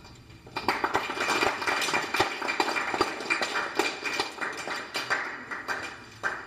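A small audience clapping, starting about half a second in and tapering off toward the end.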